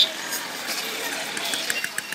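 Noisy ambience with indistinct voices under a steady rushing, traffic-like noise, with a few sharp clicks near the end.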